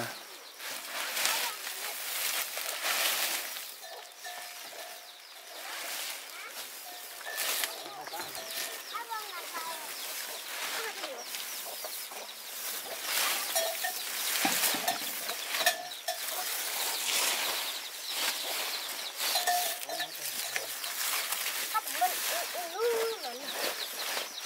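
Woven plastic tarpaulin rustling and crinkling on and off as it is pulled taut and tucked against a hut wall to keep the wind out.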